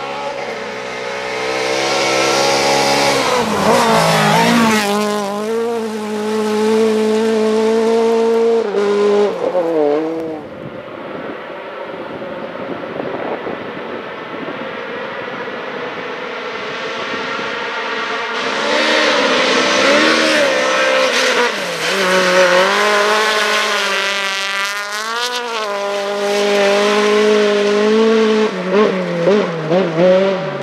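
Rally car engines at high revs on a gravel stage: the pitch climbs and falls with gear changes and lifts as the first car passes, the sound drops about ten seconds in, then another rally car is heard approaching and revving hard, with quick rises and falls in pitch in its second half.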